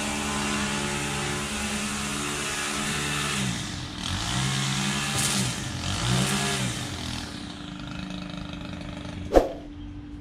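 A small lawn-equipment engine running steadily, then throttling down and back up twice in the middle before settling to a quieter steady running. A single sharp click comes near the end.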